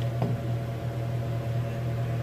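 Steady low electrical hum of a running appliance in a small room, with a fainter, higher steady drone above it.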